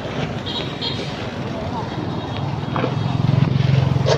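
Small motorbike engine running, with a steady low note that gets louder about halfway through.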